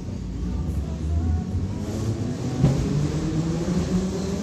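Moscow metro train heard from inside the car as it pulls away from the station: a steady low rumble with a faint rising motor whine in the last second or so, and one knock almost three seconds in.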